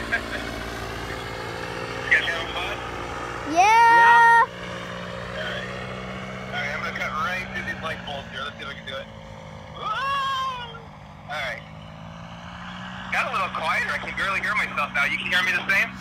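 Paramotor engine droning steadily overhead, with loud rising voice calls about four seconds in and again around ten seconds, and talking near the end.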